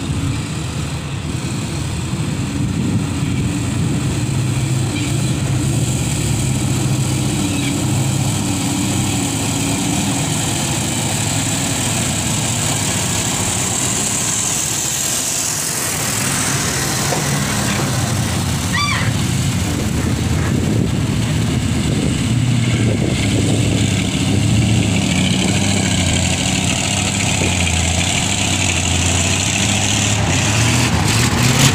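Diesel engines of heavy tanker trucks running steadily close by, a continuous low rumble, with a short high squeak about two-thirds of the way in.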